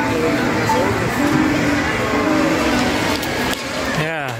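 Busy amusement-arcade din: electronic game-machine music and jingles over a wash of children's voices and crowd noise, thinning a little near the end.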